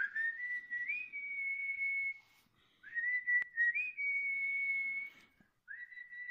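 A person whistling a slow tune of long held notes, each phrase opening with a short upward slide and stepping up in pitch partway through. Two phrases of about two seconds each, with a third starting near the end.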